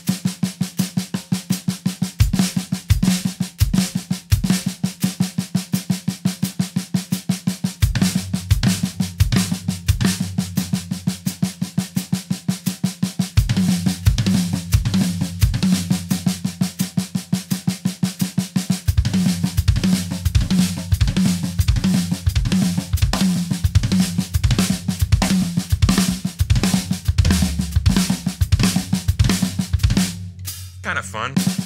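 A drum kit played as a continuous phrase in even sixteenth notes: quick stick strokes on snare and toms with bass drum strokes underneath. Strokes on a lower tom come in about eight seconds in, drop out, and return from about thirteen seconds.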